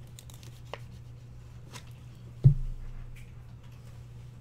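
Cardboard trading cards and plastic card sleeves being handled, with light rustles and ticks. There is one sharp thump about two and a half seconds in.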